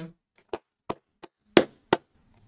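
Five slow hand claps, about three a second, the fourth the loudest.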